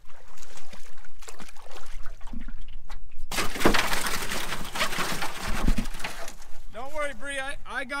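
Water splashing and sloshing beside an aluminum canoe, loudest for about three seconds from just past the middle, then a man's voice near the end.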